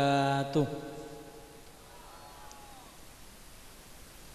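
A man's voice holding a long chanted note, which ends about half a second in and fades away; after that only faint background hiss.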